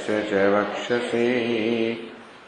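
A man's voice chanting Sanskrit invocation verses in a slow recitation, holding each syllable on a steady note with short breaks between phrases.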